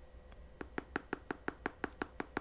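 Quick, even light taps, about six a second, starting about half a second in, as charcoal clay mask powder is shaken from a paper pouch into a small glass bowl.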